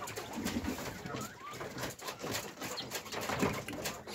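Caged Texas quail giving soft, low calls, with a brief higher chirp about a second in, over scattered short clicks and scratches from the birds on the wire-mesh floor.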